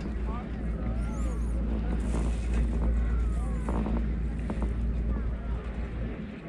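Steady low rumble of wind and the moving chair on the microphone during a chairlift ride, with faint voices talking in the background.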